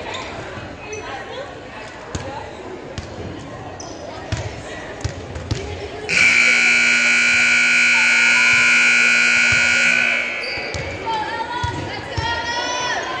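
Gymnasium scoreboard buzzer sounding one steady blast of about four seconds, starting about halfway through, as players return to the court. Before it come scattered ball bounces and footfalls on the hardwood floor.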